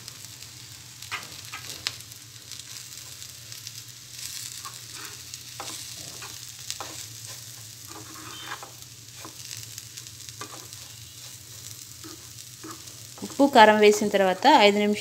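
Spice-coated cluster beans frying in a nonstick pan with a faint steady sizzle. A spatula stirs them, scraping the pan in irregular strokes that grow busier a few seconds in.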